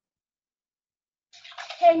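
Dead silence for over a second, then a short rush of hiss that runs into a voice starting to speak near the end.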